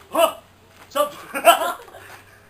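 A man's voice: three short vocal outbursts, one just after the start and two close together about a second in, with no words in them.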